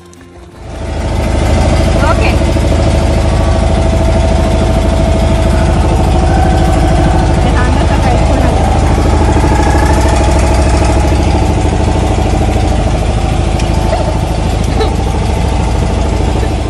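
A boat engine comes in loud about a second in and then runs steadily with a deep rumble.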